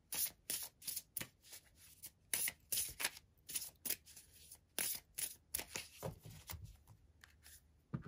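A deck of oracle cards being shuffled by hand: a quick, irregular run of papery riffles and snaps that thins out near the end, closing with a single tap as a card is set down.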